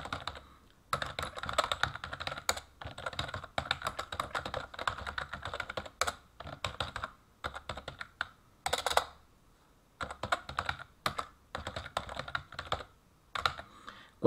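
Typing on a computer keyboard: rapid keystroke clicks in bursts of a second or two, with several short pauses between the words.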